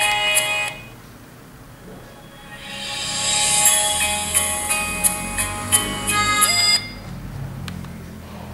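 Song playing on a 7-inch multimedia e-book reader's music player. It stops under a second in, and after a gap of about two seconds a track fades in, then cuts off suddenly shortly before the end. A faint click follows.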